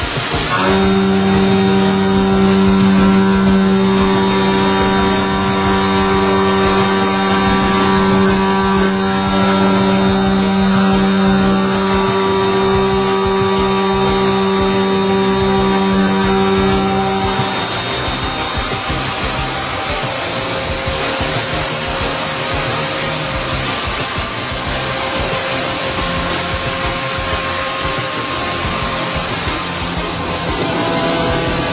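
Leadwell V-40M vertical machining centre milling a metal workpiece: a steady, constant-pitch whine of the spindle and cutter, with overtones, over a steady hiss. About 17 seconds in the whine stops, and fainter, different tones continue over the hiss.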